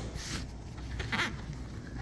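Mohair pile weatherstrip, 6.1 mm base with 10 mm pile, being pressed into the groove of a PVC high-sash screen frame with a screen spline pusher. It makes a few short, irregular sounds as it seats, the loudest about a second in. The strip is the snug-fitting size that stays put once in.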